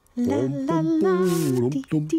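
Voices singing a melody in harmony, with no instruments standing out.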